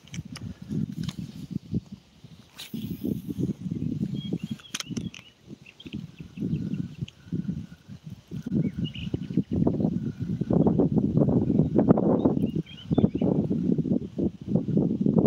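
Wind gusting over the phone's microphone, an uneven low rumble that grows louder in the second half, with a few faint bird chirps above it.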